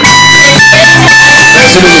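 Electronic keyboard playing a slow bolero: sustained held chords with a melody line above, continuous and loud.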